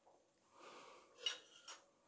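Faint handling sounds as raw chicken pieces are turned in flour in a plastic tub: a soft rustle, then two light clicks less than half a second apart.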